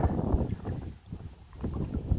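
Storm wind buffeting the microphone in gusts, a low rumbling rush that eases about a second in and comes back near the end.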